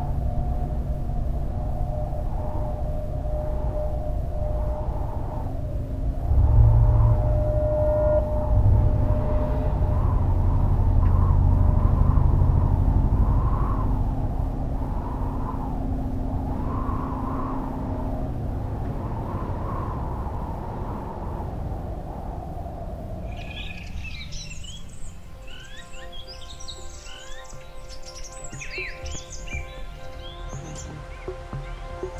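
Ambient soundtrack: a low rumbling drone with held tones and a slow pulsing swell, gradually fading. About three-quarters of the way through it changes abruptly to many birds chirping over soft sustained tones.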